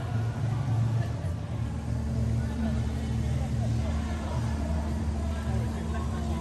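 Busy pedestrian shopping street: passers-by talking over a steady low rumble, with a faint hum joining about a second and a half in.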